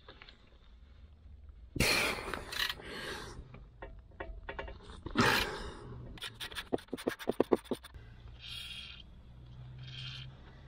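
Ratchet wrench working a bolt on the exhaust mounting under the car: scraping of tool and metal, then a quick run of ratchet clicks, several a second, about six seconds in.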